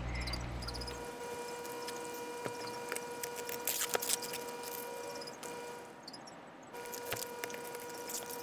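Foil tape being peeled and crumpled off a glass jar: scattered crackles and rustles, with a louder crinkling burst about four seconds in, over a steady electrical hum.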